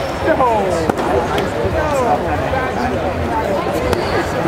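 Background chatter of several voices in a large sports hall, with a sharp knock about a second in.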